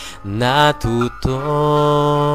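A man singing a slow Tagalog ballad: a short broken phrase, then one long held note from a little past halfway in.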